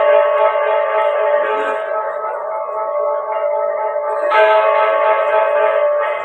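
Balinese gong kebyar gamelan playing a lelambatan piece: bronze metallophones and gongs ringing in layered, sustained tones. The sound thins out in the middle, then the ensemble strikes together again with a fresh loud entry about four seconds in.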